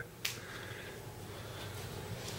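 A single short, sharp click about a quarter second in, then quiet room tone with a faint low hum.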